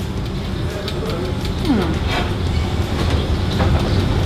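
A steady low rumble of background machinery runs throughout. About halfway through comes a short falling glide in pitch.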